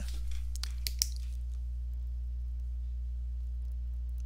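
Steady low electrical hum, with a few faint clicks in the first second.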